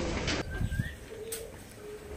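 A bird calling in the background with a few short low cooing notes, and a brief rising whistle early on. A few faint clicks run under it.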